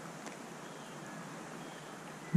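Steady, even rush of shallow creek water running over stones, with no distinct events.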